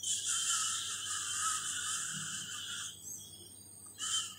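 An insect buzzing steadily and high-pitched for almost three seconds, then cutting off.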